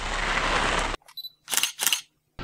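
A steady rushing outdoor noise that cuts off abruptly about a second in, followed by a camera shutter sound, two short sharp clicks close together near the end.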